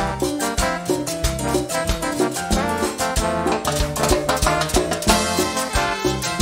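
Live cumbia band playing an instrumental passage with a steady, even beat.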